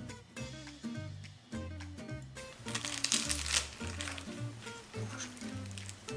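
Background music with plucked notes over a repeating bass line, and a brief crackly rustle about three seconds in.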